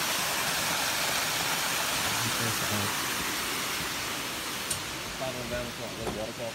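Steady rushing hiss of small waterfalls, fading somewhat in the second half. Faint voices come in near the end.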